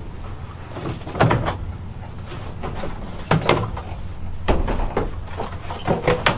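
Black plastic planter tubs being handled and set into holes cut in a plywood shelf: several hollow knocks and short scrapes of plastic on wood, the loudest about a second in and again past the middle.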